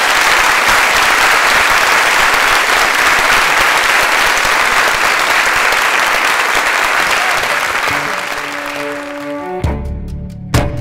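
Audience applauding steadily after a reading, the clapping fading over the last couple of seconds. Music comes in near the end, with a sudden loud low note just before the end.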